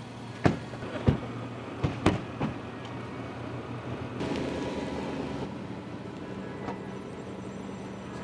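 Car doors thumping shut several times in the first couple of seconds, then a Range Rover Sport's engine running as it moves off. It is heard through a hall's loudspeakers as part of a played video's soundtrack.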